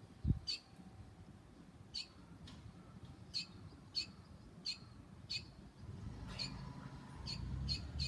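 Barn swallow chirping: short, high, sharp calls, about ten of them at irregular gaps of roughly half a second to a second and a half. A low thump just after the start, and a low rumble over the last couple of seconds.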